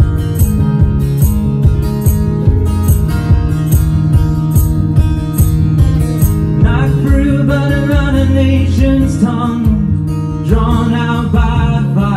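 Acoustic guitar strummed in a steady rhythm, about two strokes a second. A man's singing voice comes in about seven seconds in, pauses, and returns near the end.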